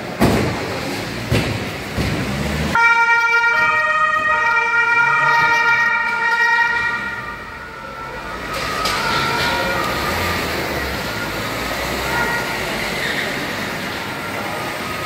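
Several police car sirens sounding together, starting about three seconds in as steady overlapping notes that switch pitch every second or so. They are loudest for the next five seconds, then go on more faintly.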